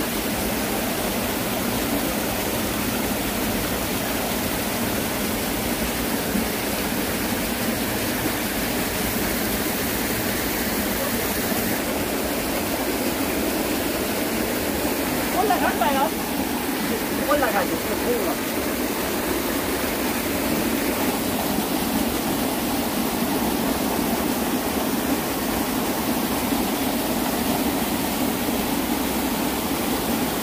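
Small mountain stream running over rocks: a steady rushing of water. About halfway through, a voice is heard briefly over it.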